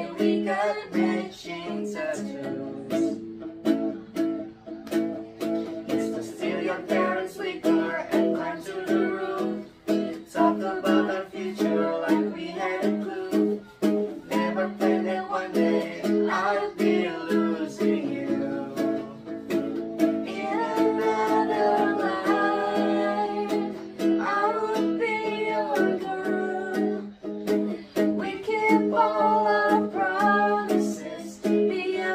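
Small nylon-string acoustic guitar strummed in a steady rhythm, accompanying a woman's lead vocal with several other voices singing along.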